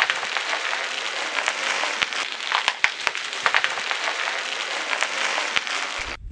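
Bubble wrap crackling and popping as a car tyre rolls over it: a dense, steady run of crackles with sharp pops scattered through, stopping abruptly at the end.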